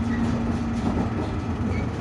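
Inside the cabin of a JR East Ofunato Line diesel railcar under way: a steady low rumble of the wheels on the rails and the running gear. A steady hum fades out about a second in.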